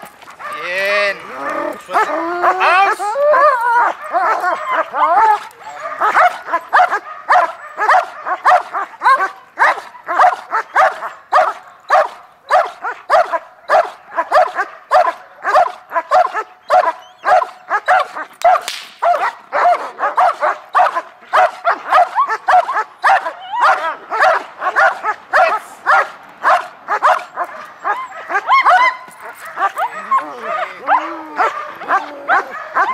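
Doberman barking hard and without pause, about two to three barks a second, with a few higher whining yelps at the start: a dog in protection training barking at the helper and his bite sleeve.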